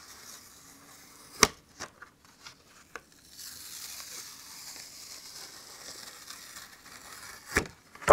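A cardstock card being peeled off a flexible adhesive sticky mat: a steady, high-pitched papery crackle of the tack letting go for about four seconds in the middle, after a sharp tap about a second and a half in and a few lighter clicks of handling.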